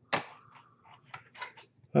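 Plastic graded-card slabs being handled on a desk: a sharp knock just after the start, then a few light clicks about a second in.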